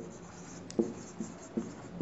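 Marker writing on a whiteboard: a series of short, quiet strokes and taps, a few each second, as the words are written.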